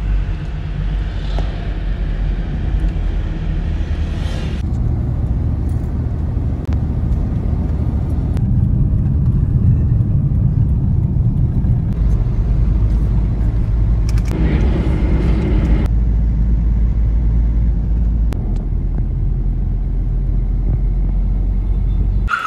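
Road and engine noise heard inside the cabin of a moving car: a steady low rumble with a few faint clicks.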